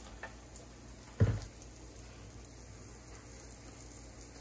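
Pancake batter sizzling steadily on a hot pan, with a single dull thump about a second in.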